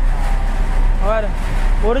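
A man talking briefly over a steady low rumble and hum.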